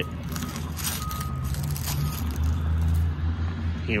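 A steady low engine drone from a machine or vehicle running somewhere on the lot, with light crunching of footsteps on gravel.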